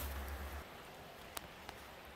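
Faint outdoor background: a low rumble that stops about half a second in, then quiet hiss with two small clicks.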